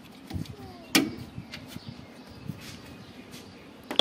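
Hands fitting wiring and clips on a car's radiator support: one sharp click about a second in, with a few lighter clicks and knocks around it.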